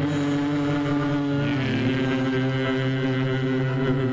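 A vocal quartet of two men and two women singing into microphones, holding a long sustained chord that shifts to a new chord about a second and a half in.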